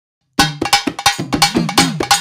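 Silence, then Tamil devotional folk music starts up about a third of a second in: fast, even drum strokes with a steady ringing tone held under them.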